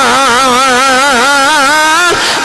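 A man's voice singing one long held note into a microphone, the pitch wavering up and down in quick, even waves like an ornamented vibrato, as in the sung cadence of a devotional verse.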